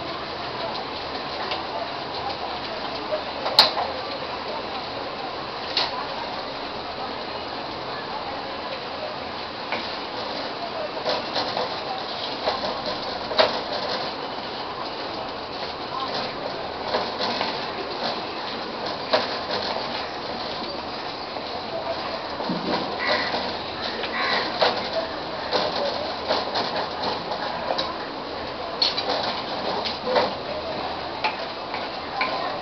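Thick papaya halva cooking in a kadai: a steady hiss with many small, irregular pops and clicks as the mixture bubbles and splutters, with occasional scrapes of the stirring spoon.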